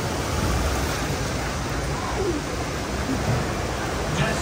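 Steady rush of whitewater rapids churning over rocks around a river-rapids raft.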